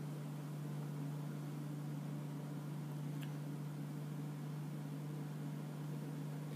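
Steady low machine hum with an even hiss over it, unchanging throughout, with one faint click about three seconds in.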